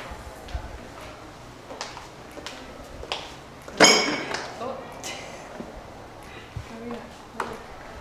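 Scattered light footsteps and knocks on a tile floor, with one sharp ringing clink about four seconds in, the loudest sound.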